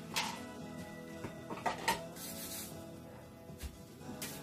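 Quiet background music of steady held tones, with two light knocks as a plastic citrus squeezer and kitchen utensils are picked up and set down, one just after the start and one about two seconds in.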